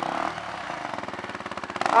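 Single-cylinder enduro motorcycle engine, a Husqvarna, running steadily at low revs close by, with a rapid, even beat of firing pulses.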